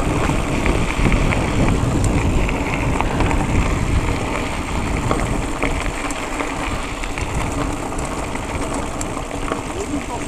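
Wind rushing over an action camera's microphone on a moving mountain bike, with tyres rolling on loose gravel and small clicks and rattles from the bike.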